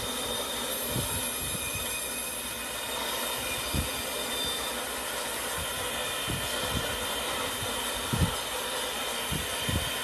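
Industrial log-processing machinery running with a steady, noisy rumble and hiss. A few dull knocks come at irregular intervals, the loudest about eight seconds in.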